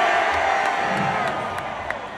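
Concert crowd cheering and yelling, many voices at once, loudest at first and fading toward the end.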